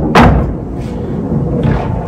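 A single sharp thud shortly after the start, then a fainter knock later on, with low sounds of movement between.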